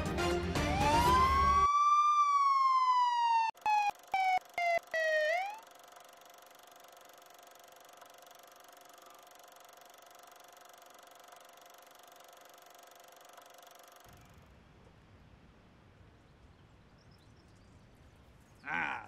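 Film-malfunction sound effect: a tone sweeps up, then slides slowly down in pitch over about three seconds, stuttering with several sharp cutouts, as if the film is grinding to a halt. After it, a faint steady hum.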